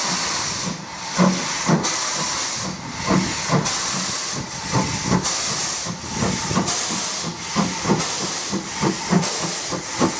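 Steam locomotive moving off slowly under power: a continuous loud hiss of escaping steam, with the chimney exhaust beats coming as separate chuffs that grow gradually quicker.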